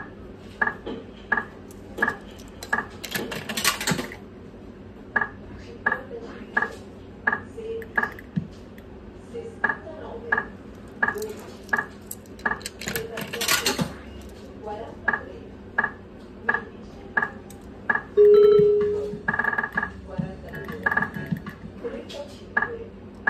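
Video slot machine sound effects during play. Short electronic beeps repeat about every two-thirds of a second as the reels spin and stop. Two brighter, chiming bursts come about three seconds in and again about halfway, and a loud held tone sounds near the end.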